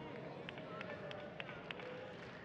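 Faint room tone of a large auditorium with an audience, with a faint held tone and a few light ticks scattered through it.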